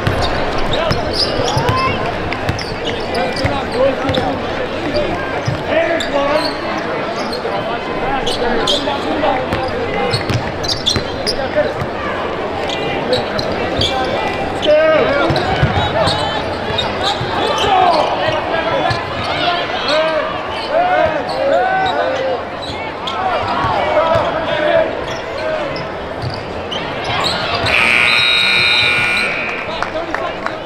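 A basketball dribbling on a hardwood court amid the voices of an arena crowd. Near the end, a high-pitched tone sounds for about two seconds as play stops.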